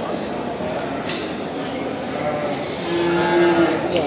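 Sheep bleating in a crowded pen, with one longer held bleat about three seconds in, over the steady din of a busy livestock market.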